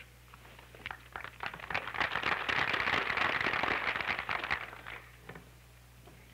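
Audience applauding: a round of clapping that builds about a second in and dies away near the end, over a steady low hum.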